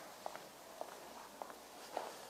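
Faint footsteps of people walking across the floor, a soft knock about every half second.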